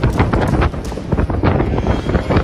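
Wind buffeting the microphone in a loud low rumble, with a scatter of short knocks and crunches.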